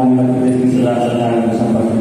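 A man's voice over a microphone drawing out a word into one long held tone, in the stretched-out delivery of a political speech.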